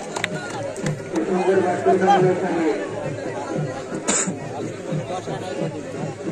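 Many people talking and calling out at once around an outdoor cricket game, with a short hissy burst about four seconds in.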